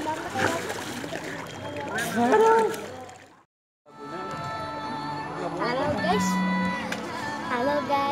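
Children splashing and calling out in a swimming pool. A brief silence about three and a half seconds in, then background music takes over.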